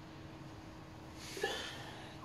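A person's short, sharp breath through the nose about a second and a half in, over a faint steady hum.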